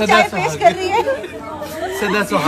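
Several people talking over one another in casual conversational chatter.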